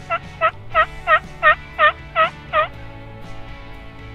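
Turkey yelping: a run of eight evenly spaced, rough yelps, about three a second, that stops near the three-quarter mark, over background music.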